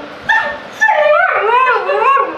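Siberian husky 'talking': a short call, then a longer howling call whose pitch wavers up and down several times.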